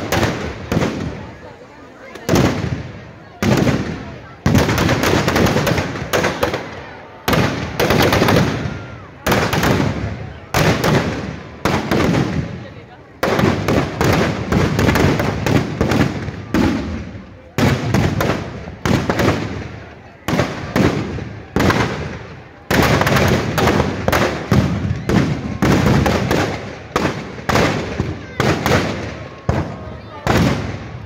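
Firecrackers packed inside burning Dussehra effigies going off in a long irregular string of loud bangs, roughly one every second, with crackling between the bangs and crowd voices underneath.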